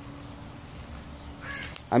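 Canary chicks in the nest giving a brief raspy begging call near the end, over a faint steady low hum.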